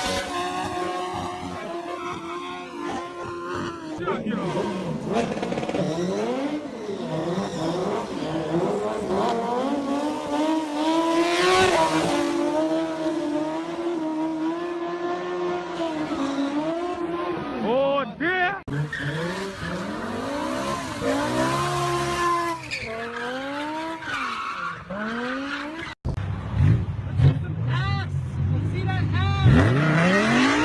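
Burnouts: engines held at high revs with tyres spinning and squealing on the road, the engine pitch wavering up and down. People in the crowd shout and talk over it. Over the last few seconds a deeper-sounding engine is revved, rising in pitch.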